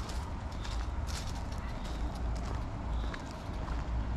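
Footsteps of a person walking on a paved path: a run of light clicks about two a second, over a low steady rumble.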